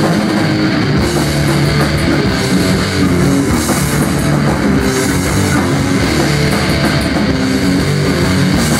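Live punk band playing loud and continuously: distorted electric guitars, bass and a drum kit.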